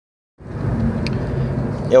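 Steady road and engine noise heard from inside a moving car's cabin, starting abruptly about half a second in.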